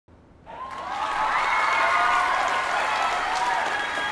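A crowd applauding and cheering, swelling in about half a second in, with many voices calling out over the clapping.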